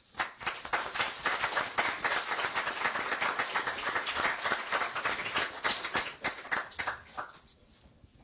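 Audience applauding, a dense patter of many hands clapping that starts at once and dies away about seven seconds in.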